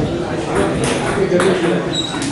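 Indistinct chatter of voices in a large hall, with a few short, sharp clicks.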